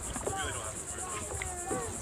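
A steady high-pitched insect chorus pulsing about ten times a second, with faint voices talking in the background.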